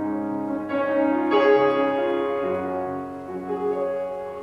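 Grand piano playing slow, held chords, with the chord changing several times.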